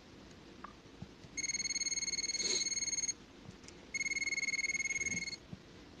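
Non-contact voltage tester pen giving two long, steady high-pitched beeps, each about a second and a half, the first starting about a second and a half in. The beeping signals that it detects voltage on the power cable.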